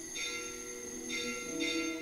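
Bells struck three times, each strike ringing on, over music with long held notes.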